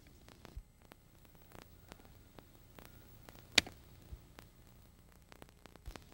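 Hand-squeezed plastic pipe cutter working through polyethylene pipe: faint clicks and creaks, with one sharp snap about three and a half seconds in as the blade cuts through.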